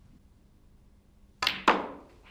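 Two sharp clacks of a snooker shot, cue tip and balls striking, about a quarter second apart a little over a second in.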